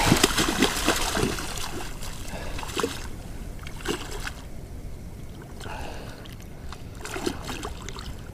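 A hooked snook splashing at the water's surface, a busy run of splashes in the first few seconds, then quieter with a few scattered splashes.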